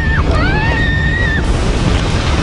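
A woman screaming on a log flume drop, one long rising cry, then a loud rush of spraying water from about a second and a half in as the log splashes down.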